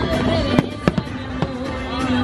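Fireworks going off over the show's music: four sharp bangs in the first second and a half, two of them close together, while the soundtrack plays on.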